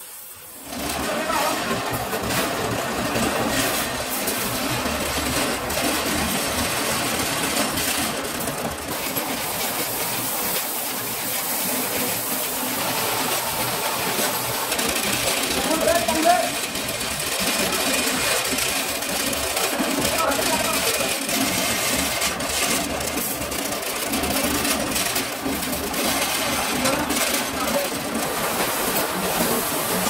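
Metalworking machinery running steadily, with people talking over it.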